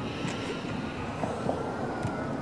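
Steady low rumbling noise with hiss and a faint high whine held through, with no music or voice.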